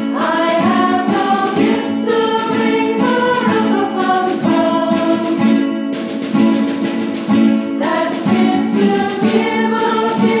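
Women's choir singing a song with acoustic guitar strumming accompaniment; the voices come in at the start over the guitars.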